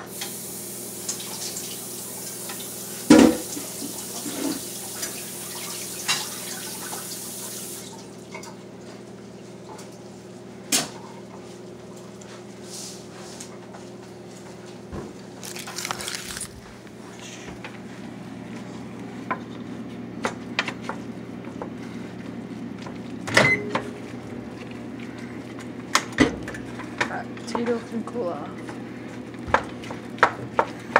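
Water running from a kitchen tap that shuts off about eight seconds in, over a steady low hum. A wooden spoon knocks against a stainless steel pot a few times.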